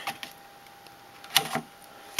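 A sharp click about one and a third seconds in, with a short clatter after it: a graphics card being set into a motherboard's expansion slot. A faint steady tone runs underneath.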